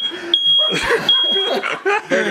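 Smoke alarm sounding a loud, high, steady-pitched beep in repeated long beeps of about half a second with short gaps, over people's voices.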